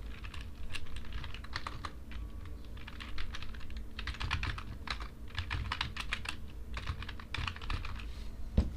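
Computer keyboard being typed on, keystrokes clicking in quick runs separated by short pauses.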